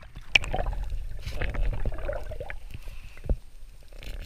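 Sea water sloshing and gurgling around a diver's camera as it goes from the surface back under water. There is a sharp click about a third of a second in and a dull knock near the end.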